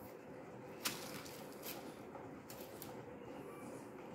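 Quiet room tone with a few faint clicks and ticks from hands handling a strand of glass seed beads on a needle and thread, the sharpest about a second in.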